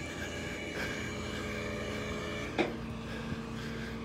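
Steady hum of an idling vehicle engine, with a short click about two and a half seconds in.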